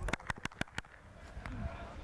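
A quick run of about seven sharp clicks or taps in under a second, near the start.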